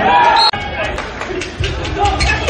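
Indoor volleyball rally: players' shoes squeaking on the court and sharp ball strikes, in a reverberant arena. The sound breaks off abruptly about half a second in and comes back quieter.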